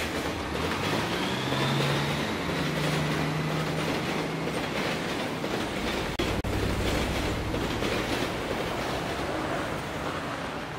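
Chicago 'L' elevated train running over the steel elevated structure: a steady rumble and clatter of wheels on track, with a faint high wheel squeal over the first few seconds. The sound drops out for a moment about six seconds in, then carries on.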